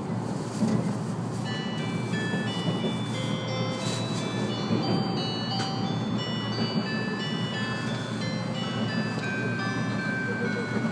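An onboard chime melody of short high bell-like notes played over the train's PA, starting about a second and a half in, as the announcement of the approaching terminus ends. Beneath it runs the steady low rumble of the 485-series train moving along the track.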